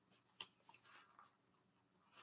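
Near silence with faint handling noise from 7-inch records being sorted by hand: one small click and a couple of softer ticks in the first second.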